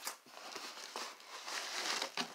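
A short click, then soft rustling and scraping as a binder and its packing are handled inside a cardboard mailing box.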